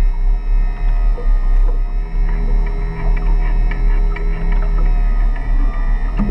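Background music with sustained, droning tones over a deep steady hum.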